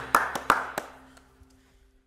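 The closing hits of an acoustic country band's song: four sharp percussive strikes in the first second, after which a held low note rings out and fades to near silence.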